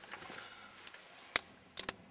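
A few sharp clicks from hands on a 1989 Mercedes-Benz 300E's interior trim and controls: one loud click about two-thirds of the way in, then a quick pair near the end.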